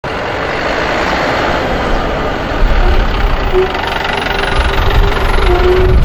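Minibus engine running close by amid roadside traffic noise, its low rumble growing louder about halfway through.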